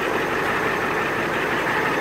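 Ford F-250 diesel engine idling: a steady run with a fast, even low pulse.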